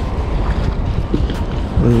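Wind buffeting the microphone, with a steady rush of river water beneath it.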